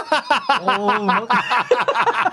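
Men chuckling and laughing amid talk, with one drawn-out voiced sound about a second in.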